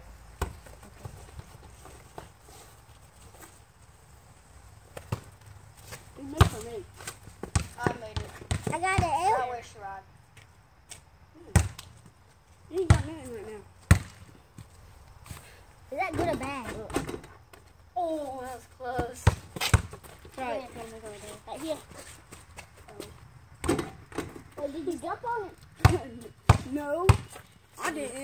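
A basketball bouncing on hard ground in single, irregularly spaced thuds, about a dozen in all, with children's voices in between.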